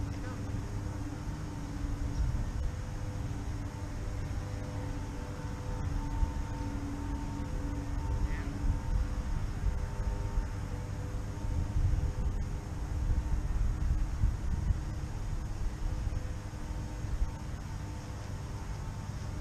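Outdoor background noise: a low, uneven rumble with a distant engine drone at a steady pitch that fades in and out.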